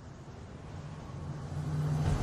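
A low, sustained musical swell that grows steadily louder, a soundtrack riser building into the next music cue.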